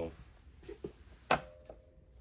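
A single sharp click about a second in, in an otherwise quiet pause, followed by a faint steady hum and a smaller click.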